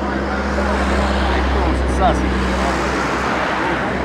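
Football match ambience: scattered shouts and calls from players and spectators over a steady low hum, which breaks up about three seconds in.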